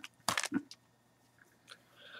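Hands handling a small lavalier microphone and its packaging: a quick cluster of crackling clicks about a quarter of a second in, then a few faint clicks.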